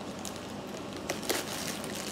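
Plastic mail pouch crinkling and crackling as fingers pull at it, trying to get it open, with a cluster of sharper crackles a little past a second in.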